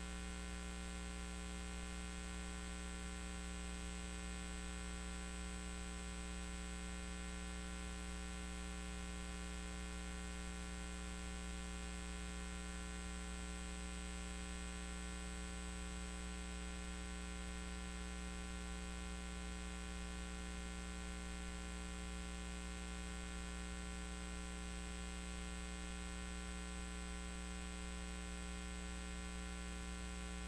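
Steady electrical mains hum, buzzy with many overtones, with a faint high-pitched whine above it.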